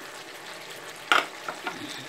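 Beef and vegetable stir-fry sizzling steadily in a nonstick frying pan, with one sharp clatter about a second in and two lighter clicks after it.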